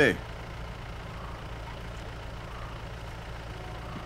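A vehicle engine idling: a low, steady hum.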